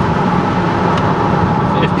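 Steady engine and road noise inside a moving car's cabin, a constant low hum under an even rush.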